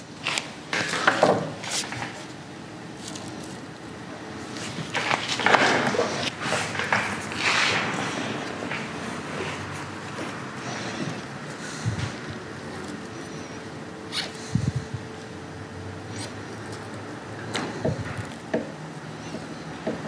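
Scissors snipping through a bunch of dry fake grass fibres, with crackly rustling as the grass is handled. The snips and rustles come thick in the first several seconds, then thin out to occasional small taps and rustles.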